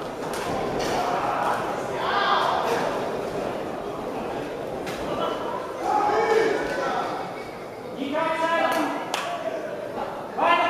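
Voices calling out in a large, echoing sports hall during an amateur boxing bout, with a few sharp thuds. A man's raised voice stands out near the end.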